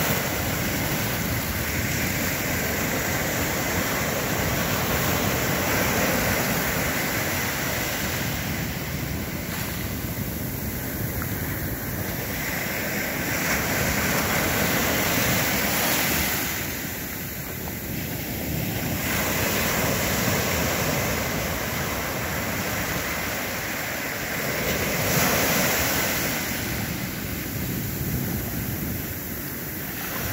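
Sea surf: small waves breaking and washing in at the water's edge, a steady wash that swells and ebbs every several seconds. Wind rumbles on the microphone.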